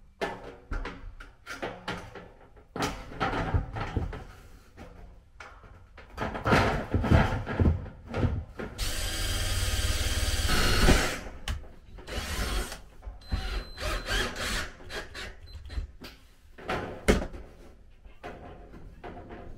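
Cordless drill driving a screw into a corrugated sheet-metal shower wall panel: one steady run of about two seconds near the middle and a shorter burst soon after. Sharp knocks and rattles of the thin metal sheet being handled come throughout.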